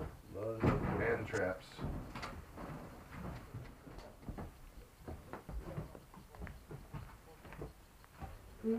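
Footsteps and shifting feet on loose old wooden floorboards and debris, a run of scattered knocks, clacks and creaks of dry wood. A voice is heard briefly near the start.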